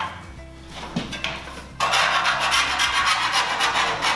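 A hand file rasping quickly back and forth along the cut edge of light-gauge steel cable tray, deburring the hacksaw cut. It starts a little under two seconds in, after a few light metallic knocks, and runs on loudly.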